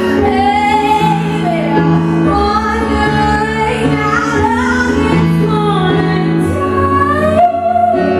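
A woman singing live while accompanying herself on an electric keyboard: long, gliding vocal notes over sustained keyboard chords that change every second or so.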